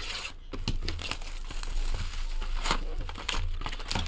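Plastic shrink wrap being torn and crinkled off a trading-card hobby box, a dense run of small crackles and clicks throughout.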